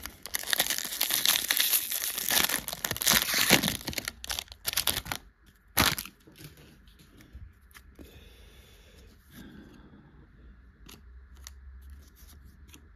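Foil wrapper of a Topps baseball card pack being torn open and crinkled: a dense crackle for about five seconds, with one more sharp crackle about a second later. After that it goes much quieter, with a few faint clicks as the stack of cards is handled.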